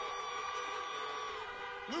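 Several car horns held in steady, overlapping tones, honked as applause.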